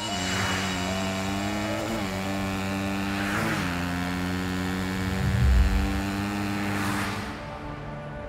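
Sound effect of a riding electric scooter: a steady motor hum, with whooshes of passing traffic about half a second in, about halfway and around seven seconds. A low thump comes a little past five seconds, and the sound fades near the end.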